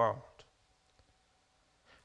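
A man's voice finishing a word, then a pause of near silence broken by a couple of faint clicks.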